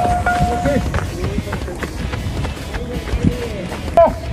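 Players' voices calling out across an open ball field, opening with one held call that lasts under a second, then scattered, fainter calls.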